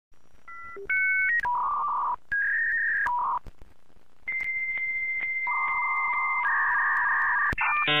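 Dial-up modem connecting over a phone line: a quick run of touch-tone dialing beeps, then a series of steady handshake tones, including one long high whistle of about two seconds. Near the end it changes to a dense, warbling chord of many tones.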